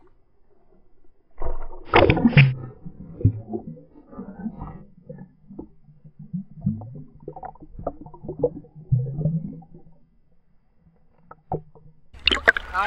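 Water sloshing and bubbling around an action camera held at and below the surface, heard dull and muffled, with scattered knocks and thuds.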